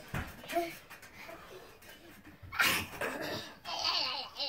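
Young girls laughing and giggling during play, with a loud breathy burst of laughter a little past halfway. There is a low thump at the very start.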